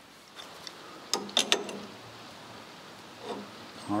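A few short metallic clicks and knocks about a second in, with another soft knock near the end: tools and steel linkage parts being handled on a tractor's three-point hitch, over faint workshop room noise.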